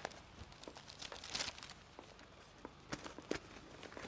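Faint, scattered footsteps on a wooden floor and light rustling of clothes and paper in a quiet room.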